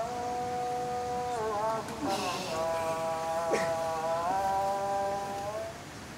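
A man's voice singing or chanting two long held notes, each sliding in pitch at its ends, the second lasting over three seconds. A brief hiss comes about two seconds in and a short click about halfway through.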